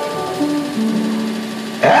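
Electronic keyboard holding sustained notes that step down in pitch. A man's voice comes back in near the end.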